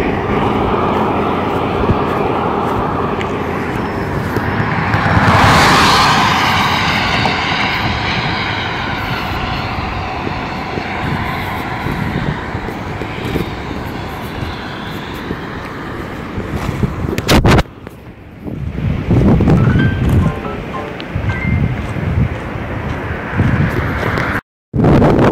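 A loud, steady rushing roar that swells about five seconds in, takes on a sweeping, phasing quality and slowly fades. After a sudden break near the end it gives way to rougher, gusty noise.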